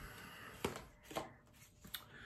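Tarot cards being shuffled by hand: three soft, sharp card clicks spread over two seconds.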